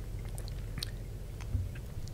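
Close-miked sipping and swallowing of whiskey on the rocks, with small clicks of ice and glass and a soft thump about one and a half seconds in.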